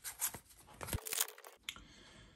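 Trading cards being handled and slid against one another in the hand: a few soft rustles and clicks, then a brief scraping swish of card stock rubbing card stock about a second in.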